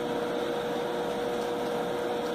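Steady indoor background noise: an even hiss with a constant mid-pitched hum under it, and no other events.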